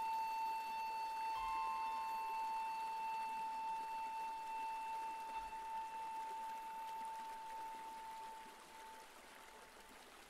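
A quiet passage of instrumental music: one long, steady high note is held and slowly fades away near the end, with a brief second, higher note joining it early on.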